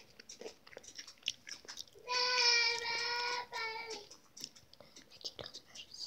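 A child chewing crunchy snack chips close to the microphone, making small crackling crunches. About two seconds in she sings one high, steady note for over a second, then a shorter one.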